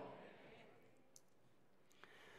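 Near silence in a pause between sentences of speech: the last of a man's voice fades away, then two faint clicks, one just past a second in and one near the end.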